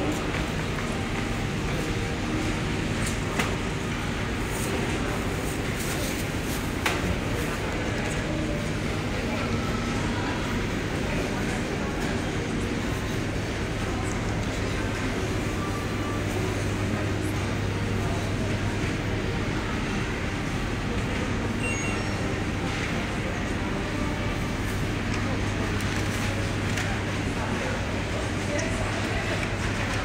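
Supermarket ambience: a steady low hum under faint, indistinct voices of other shoppers, with a few light clicks.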